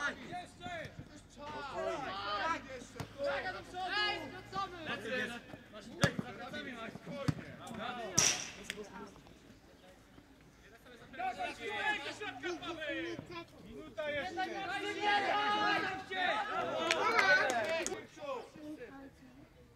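Youth football players and touchline spectators shouting and calling across the pitch, with a few sharp thuds of the ball being kicked about six and eight seconds in.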